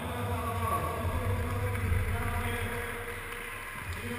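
Steady low hum of a large sports hall, with faint steady higher tones over it and a small click near the end.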